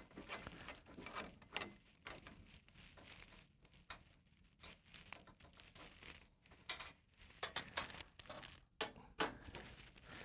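Faint scattered clicks, taps and rustles of hands handling wiring and metal parts inside a minicomputer chassis, with a few sharper clicks in the second half.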